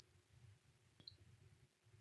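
Near silence (room tone) with one faint click about a second in.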